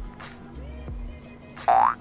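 Background music, with a short cartoon-style 'boing' sound effect rising in pitch near the end, much louder than the music.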